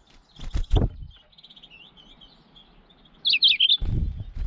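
Small songbirds chirping, with a rapid run of high twitters and then a louder burst of chirps a little before the end. Loud close thumps break in about half a second in and again just before the end.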